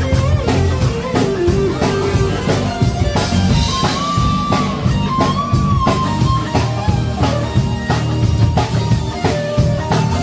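Live band playing: a drum kit keeps a steady beat under bass guitar and electric guitar, with a lead line held in long notes in the middle.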